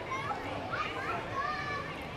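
Children's voices in the background, the faint chatter and calls of children playing, over outdoor background noise.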